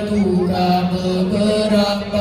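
A group of voices chanting together through microphones, in long held notes.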